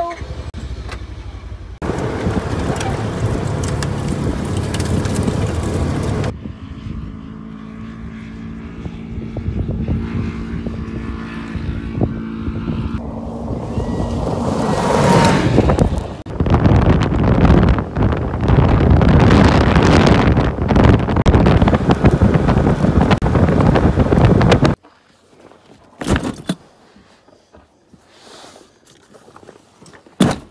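Off-road side-by-side engine running as it drives over dirt and gravel, with wind on the microphone, in several cut-together stretches; the engine rises in pitch near the middle. In the last few seconds it drops to quiet, with a couple of knocks.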